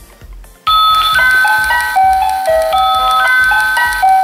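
Toy crib soother with an aquarium-style panel, switched on and playing an electronic lullaby: a simple tune of clear beeping notes, one at a time. It starts about half a second in.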